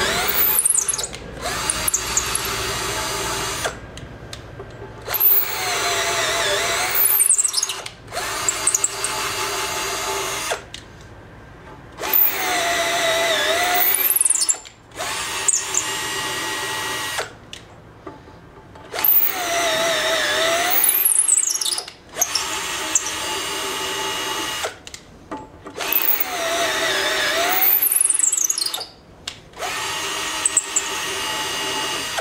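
Handheld electric drill boring holes into a metal plate in about five runs a few seconds apart. In each run the motor whine sags in pitch as the bit bites, then recovers, with short stops between holes.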